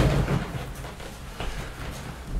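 Faint rustle of a cotton sweater being pulled down over the body and tugged into place, over a low steady rumble.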